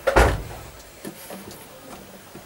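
A single thump on the baseboard just after the start, then a few faint clicks as a short piece of model railway track is handled and fitted onto the end of the laid track.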